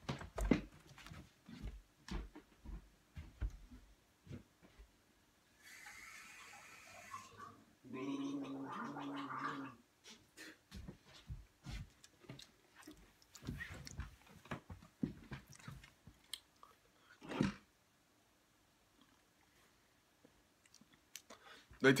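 Scattered knocks, taps and shuffling of a person getting up from a chair and moving about. Midway there is a short hiss, then a steady low pitched hum lasting about two seconds. Near the end it goes nearly quiet before speech resumes.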